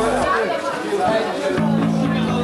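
Voices and crowd chatter in a club, then about a second and a half in the band comes in with a steady, held low note on amplified instruments.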